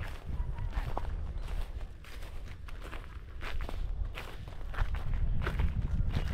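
Footsteps crunching through dry straw stubble in a harvested field, an uneven series of crisp crackles.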